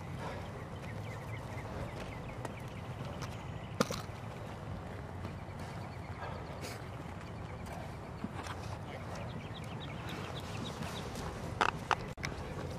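Outdoor ambience with the knocks and shuffles of people moving in field gear with loaded rucksacks over a steady background hiss; one sharper knock about four seconds in and a few more near the end.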